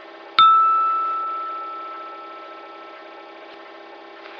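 A single bell-like ding, struck once and ringing out, fading away over about three seconds, over a steady low hum.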